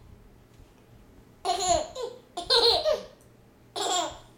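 A toddler laughing in three short bursts, starting about a second and a half in, with sliding pitch.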